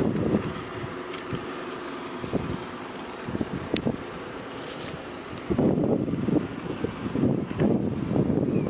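Wind buffeting the microphone in uneven gusts, louder from about five and a half seconds in, with a few faint clicks.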